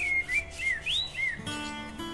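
Background music: a run of short, high chirping glides that bend up and down, then plucked acoustic guitar notes come in about one and a half seconds in.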